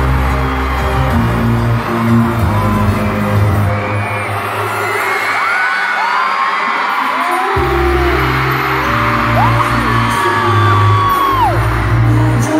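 Live K-pop concert music with a heavy bass beat, recorded from within the audience over loud arena speakers. The bass drops out for about two seconds near the middle and then comes back. Over it come many high screams from fans that rise and fall in pitch.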